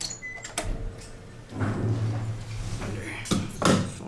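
Elevator car button pressed with a click and a brief beep, then the Otis traction elevator's doors sliding shut with a low hum, ending in a couple of loud knocks near the end.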